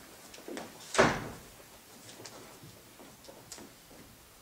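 A stage set door being shut: a softer knock about half a second in, then one loud bang with a short ring about a second in, followed by a few faint small clicks.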